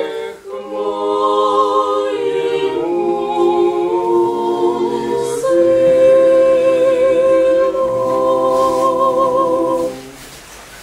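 Small mixed ensemble of men's and women's voices singing an Orthodox church chant a cappella in close harmony. After a brief breath at the start, the phrase moves through several chords and settles on a long held chord with vibrato, which stops right at the end.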